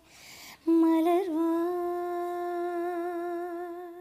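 A woman singing: a quick breath in, then one long sung note held with a slight waver, the closing note of the song.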